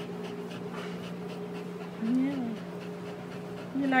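A pit bull mix dog panting steadily while being petted, with a short rising-and-falling hum about halfway through.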